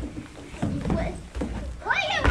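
Children's voices on a stage, with low thuds of footfalls on the wooden stage floor and a voice rising in pitch near the end.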